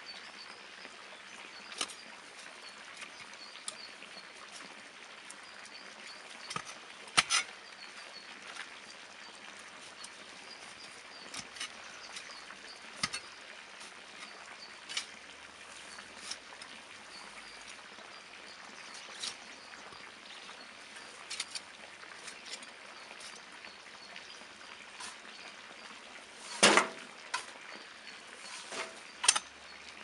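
A metal spade digging and scraping into a compost heap, with shovelfuls of compost thudding into a metal wheelbarrow. Scattered short scrapes and knocks come every few seconds, and the loudest cluster comes near the end.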